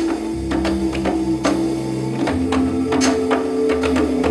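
Live electronic band music: hand strokes on a djembe and beats from a pad controller over held synth bass notes, which change pitch twice.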